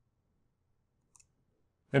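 Near silence with one faint, brief click a little past a second in, then a man's voice begins right at the end.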